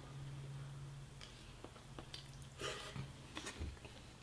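Quiet chewing and mouth sounds: a scattering of soft clicks and smacks, with a few louder bursts near the end, over a steady low hum.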